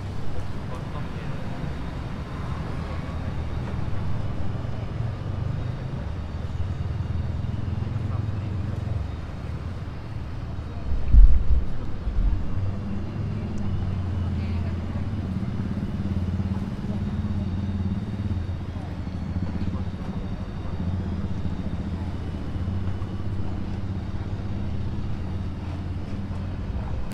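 Street ambience: a steady low rumble of traffic and motorbikes with faint voices in the background. A loud low thump comes about eleven seconds in.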